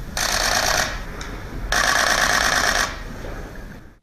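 Press cameras' shutters firing in two rapid bursts of clicking, a short one at the start and a longer one in the middle, over a faint low room rumble.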